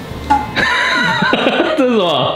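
A high, wavering, whinny-like cry starts about half a second in and slides down steeply in pitch near the end.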